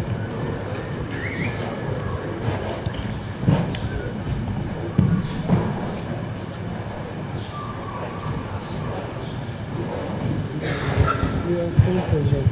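Indistinct murmur of spectators' voices, with a few soft thuds scattered through it.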